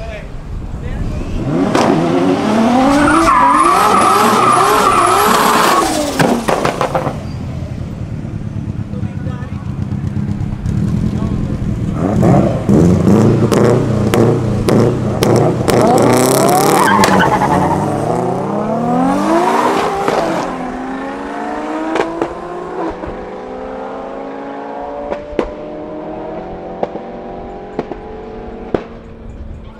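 Turbocharged drag cars, among them an RB25DET-swapped Nissan 200SX, being revved hard at the start line with tyre squeal and sharp exhaust pops and crackles, in two loud spells. Near the end the cars launch and accelerate away, their engine notes climbing through the gears and fading into the distance.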